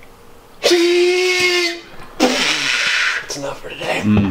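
Loud yelling from young men's voices: one shout held at a steady pitch for about a second, then a second shout that falls in pitch.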